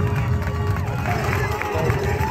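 Crowd noise at a baseball game just after the final out: a steady mix of many indistinct voices and cheering from the fans.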